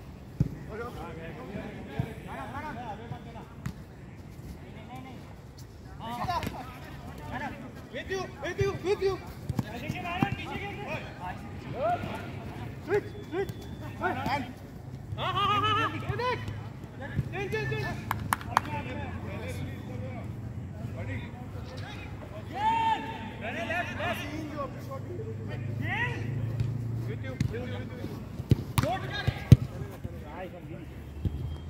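Six-a-side football game: players calling and shouting to each other across the pitch, with sharp thuds of the ball being kicked now and then.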